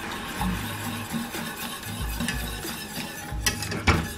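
Background music with a low repeating beat, over a wire whisk scraping and clicking against a stainless saucepan as a soy-and-cornstarch sauce is stirred.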